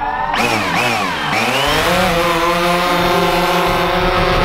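DJI Phantom quadcopter's electric motors and propellers spinning up for takeoff: a whine that climbs and swings up and down in pitch in the first second or so, then settles into a steady buzzing hum as the drone lifts off.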